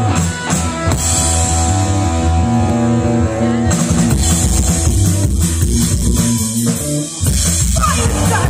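Punk rock band playing live through a PA: electric guitars and drum kit. Steady held notes ring for a couple of seconds, then drums and cymbals come in about halfway through. A short break comes just after 7 s, and the full band starts again near the end.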